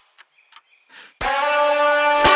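Future bass track breaking down: the music cuts out suddenly into a short gap with a few faint ticks, then a little over a second in a sustained synth chord swells in.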